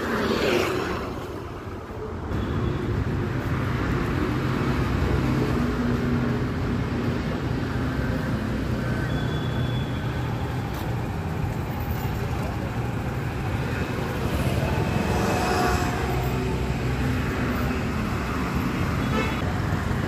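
Road traffic: a steady hum of passing cars and motorbikes that grows louder about two seconds in, with a brief horn toot near the middle.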